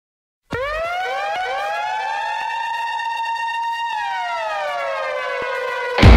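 Siren-like wail: after half a second of silence, several overlapping tones come in one after another, each rising in pitch, hold steady, then glide back down together about three and a half seconds in, ending as the music begins.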